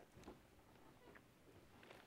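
Near silence: room tone with a few faint, soft clicks and rustles.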